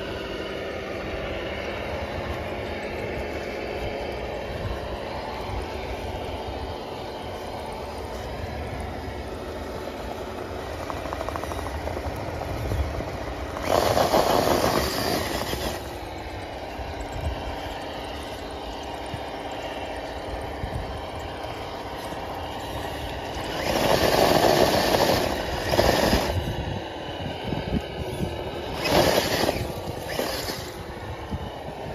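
Traxxas TRX-6 6x6 RC truck's electric motor and geared drivetrain whining steadily as it crawls over dirt, with three louder bursts of throttle: one about halfway through, one later on, and a short one near the end.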